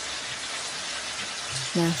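A steady, even hiss with no separate strokes or knocks. A voice says a single word near the end.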